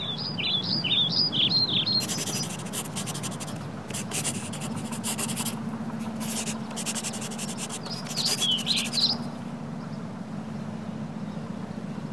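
A small bird chirping in quick repeated notes for the first couple of seconds and again briefly about nine seconds in. In between come runs of short scratchy strokes of a pencil writing on paper, over a low steady hum.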